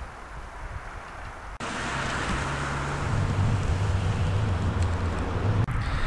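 A motor vehicle engine running steadily, with outdoor wind noise; the sound jumps louder at an edit cut about a second and a half in.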